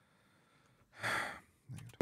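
About a second of near silence, then one short breath drawn in between sentences, lasting about half a second.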